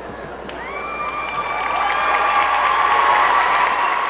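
Large audience applauding and cheering, the clapping swelling over the first couple of seconds, with high held whoops over it.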